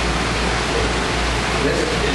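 Steady rushing noise with a low hum underneath, unchanging throughout.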